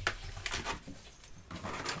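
Cards and a paper card mat being handled on a tabletop: a sharp tap at the start, then soft rustles and light taps.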